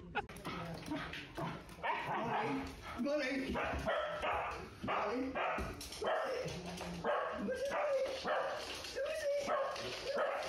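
Small dogs whining and yipping excitedly in quick, repeated short cries.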